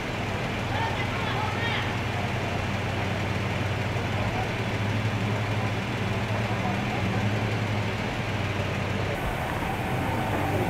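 Parked police car engine idling with a steady low hum, with faint voices in the background.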